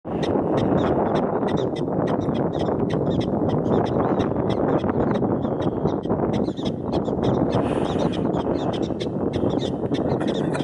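Prairie dog barking, a fast run of short sharp chirps at about four to five a second, its territorial call, over a loud, steady rushing background noise.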